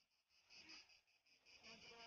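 Faint chorus of insects chirping in a rapid, even pulse, with faint distant voices.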